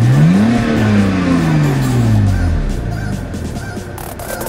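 BMW Z4 engine just after a push-button start, its revs flaring to about 2,000 rpm about half a second in, then sinking slowly over the next two seconds and settling to a steady idle.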